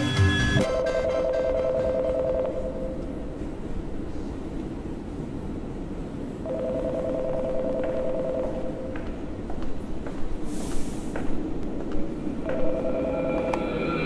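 Payphone ringing with an electronic two-tone warble: three rings, each about two seconds long, about four seconds apart, over a steady low rumble.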